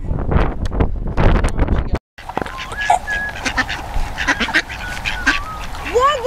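Wind rumbling on the microphone for about two seconds. After a cut, a flock of mallard ducks quacks repeatedly while being fed on grass.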